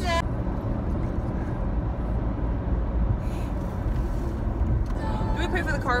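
Steady low road and engine rumble heard inside the cabin of a moving car. A voice comes in near the end.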